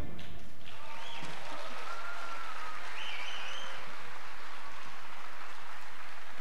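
Audience applauding steadily, with a few faint cheers rising above the clapping.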